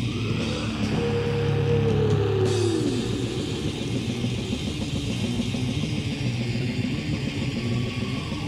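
Death/black metal from a lo-fi 1996 demo cassette: dense distorted electric guitars. One note slides down in pitch between about one and three seconds in.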